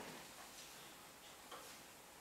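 Near silence: faint room hiss with a few soft, scattered clicks.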